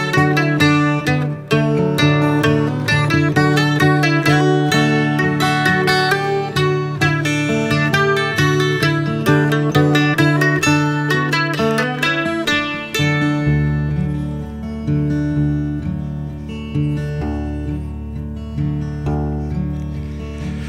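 Instrumental break of an acoustic folk song: plucked acoustic strings play a run of fast picked notes over the chords. About two-thirds of the way through, a low sustained bass note comes in and the picking grows sparser.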